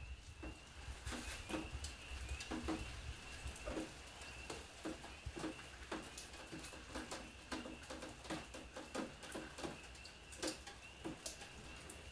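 Faint outdoor night ambience: a steady high-pitched chirring with scattered soft clicks and ticks.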